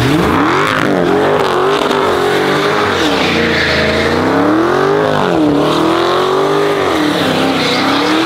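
Supercharged 6.2-litre V8 of a 2023 Dodge Charger SRT Hellcat Widebody revving hard as the car does donuts, its engine note climbing at the start and then rising and falling again and again. Under it is a loud hiss of the rear tires spinning on wet asphalt.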